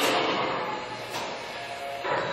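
LeBlond Regal engine lathe running with its spindle at about 194 RPM: a steady headstock gear hum with faint whining tones, easing a little over the first second, and a light click about a second in.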